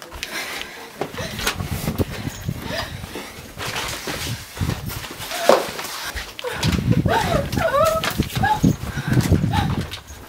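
Hurried footsteps and handling noise with short breathy vocal sounds, and a few squeaky rising and falling tones about seven seconds in.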